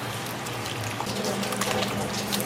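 Wire whisk beating raw eggs and chopped vegetables in a stainless-steel bowl: steady wet sloshing with quick light ticks of the wires against the metal.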